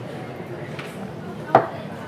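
Background murmur of a busy eatery, broken by a sharp knock about three-quarters of the way through and a fainter one before it.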